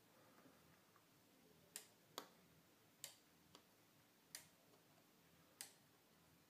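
Faint, sharp clicks, six of them at uneven intervals, from input switches being set and the relay computer's ALU relays switching in response as the input pattern changes.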